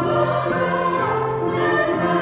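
A small women's choir singing a Christmas carol with grand piano accompaniment, in sustained notes that move from one to the next.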